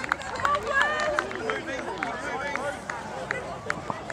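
Several voices calling and shouting over one another on a junior rugby field during a maul, with scattered short knocks and footfalls from the players pushing on the grass.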